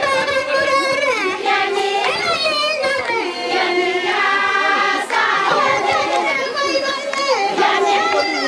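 A group of women singing together, several voices overlapping in a continuous chorus.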